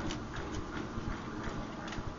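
Steady room noise with a few faint clicks and soft rustles from a hand-held Bible being handled.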